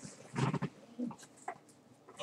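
A man's short, quiet wordless vocal sounds, like murmured hesitation noises, in a pause between sentences, with a few faint clicks.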